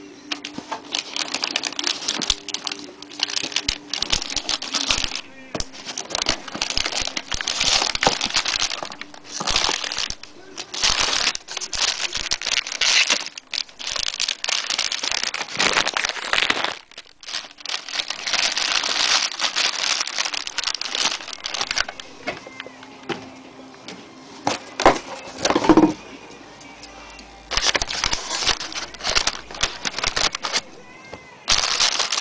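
Thin plastic bags crinkling and rustling in bursts as plastic-wrapped satellite speakers are handled and pulled out of their cardboard box.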